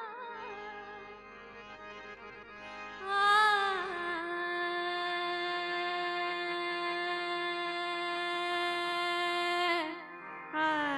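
Female Hindustani classical vocalist singing a raga with harmonium accompaniment. After a soft opening, she comes in loudly about three seconds in, bends the pitch briefly, then holds one long steady note that breaks off just before the end.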